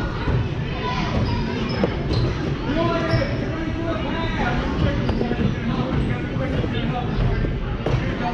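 A basketball bouncing on a gym floor during play, with the voices of players and spectators going on throughout.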